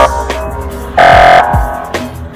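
Electronic music with a hip-hop style beat: deep bass-drum hits that drop in pitch, and a loud held synth chord about a second in.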